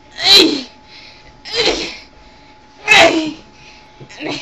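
Three short, loud vocal outbursts from a person, about a second and a half apart, each falling in pitch.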